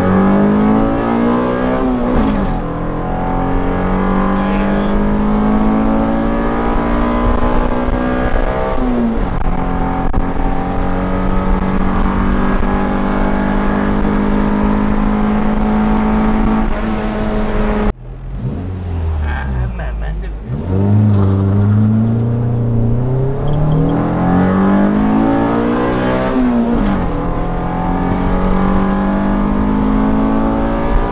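Honda Civic EG's swapped-in GSR 1.8-litre DOHC VTEC four-cylinder, heard from inside the cabin pulling hard under full throttle, its pitch climbing through the gears with upshifts about two and a half and nine seconds in. Near eighteen seconds the throttle snaps shut and the revs fall, then it pulls hard again with one more upshift near the end, a test pull to log the air-fuel mixture of a new Hondata tune.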